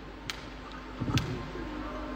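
Sharp clicks about once a second over a faint steady hum, with a dull thump about a second in.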